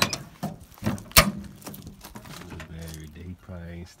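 Car door latch clicking as the chrome exterior handle is pulled, with one sharp metallic clunk about a second in as the door releases. A man's voice follows in the second half.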